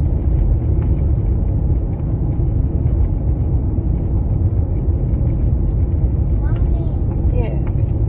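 Steady low rumble of road and wind noise inside a moving car's cabin.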